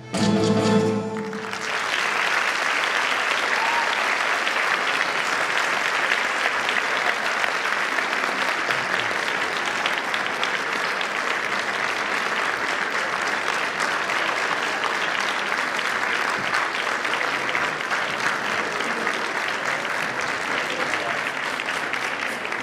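A school orchestra of guitars and violins ends on a final chord, and from about a second and a half in the audience applauds steadily for the rest of the time.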